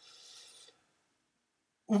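Mostly silence: a faint, short hissing rasp for under a second at the start, then dead silence until a man starts speaking again at the very end.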